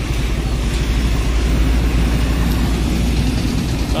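Motorcycle ride through road traffic, heard from the pillion: a steady, loud low rumble of engine and road noise, with trucks and motorbikes passing close by.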